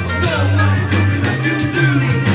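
Live band playing loudly: electric bass and guitar over regular drum hits, with a voice singing into a microphone.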